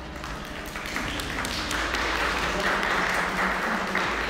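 Audience applauding. The clapping builds from about a second in and stays loud.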